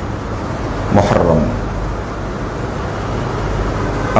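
Steady background rumble and hiss under a pause in a man's talk, broken about a second in by a brief vocal sound from him.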